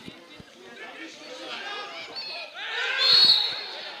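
Men's voices calling out during a football match, with one loud shout about three seconds in.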